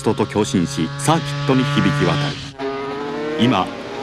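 Two-stroke 500cc Grand Prix racing motorcycle engines revving hard, their pitch sweeping up and down in quick succession as the bikes brake and accelerate through a corner. The sound cuts off sharply about two and a half seconds in, then picks up again.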